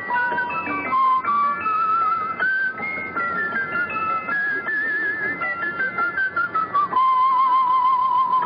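A musical box playing its tune: a simple melody of high, bell-like notes, some held with a wavering pitch, the longest near the end.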